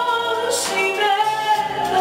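A woman singing a Greek popular song live, with a band accompanying her.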